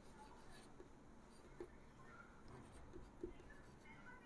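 Near silence broken by faint marker-pen strokes on a whiteboard, a few soft taps and scrapes as letters are written.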